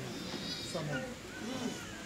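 Faint background voices, their pitch rising and falling, with no loud sound among them.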